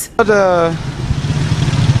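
A motor vehicle engine running close by in street traffic, a steady low rumble, heard after a man's drawn-out hesitant "the, uh".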